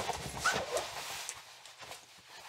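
Fabric of a jacket rustling as it is handled and pulled on, with a few small clicks from the hangers, most of it in the first second and then dying away.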